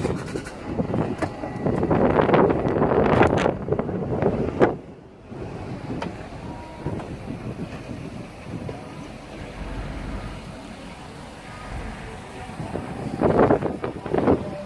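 Wind on the microphone, loudest in the first few seconds and ending with a thump just under five seconds in, then a lower, steady wash of outdoor noise.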